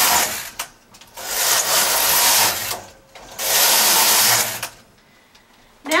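Knitting machine carriage being pushed back and forth across the needle bed, knitting rows: a rasping slide that ends about half a second in, then two more passes, each well over a second long, with short pauses between.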